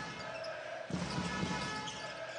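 A basketball being dribbled on an indoor hardwood court, over the steady background noise of the arena.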